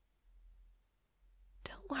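A near-silent pause with a faint low hum, then a woman's voice starts whispering near the end.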